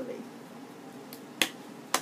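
Two sharp plastic clicks about half a second apart as a clear plastic blush compact is handled and put away.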